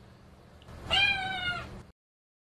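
A domestic cat meows once: a single drawn-out call beginning just under a second in and lasting about a second.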